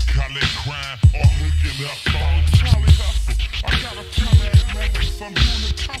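Slowed-down, screwed hip-hop mix: a rapped vocal over a heavy, deep bass line and beat, with the bass cutting out for a moment about two seconds in and again near the end.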